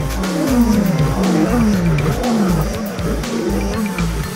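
Closing music with a steady pulsing bass beat, over a rapid run of short, low, falling growl-like tones, several a second.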